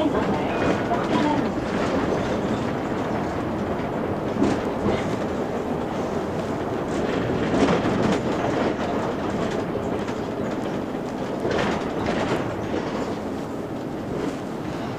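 Ride noise inside a moving Mercedes-Benz Citaro G C2 NGT articulated natural-gas city bus: a steady rumble of engine and road, broken by a few short rattles and knocks from the body.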